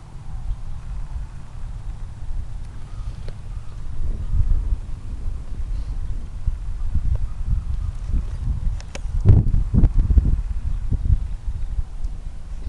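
Low, uneven thumping and rumbling from a camcorder carried on foot across a grass field: footfalls and handling noise on the built-in microphone, with a few sharper knocks about nine to ten seconds in.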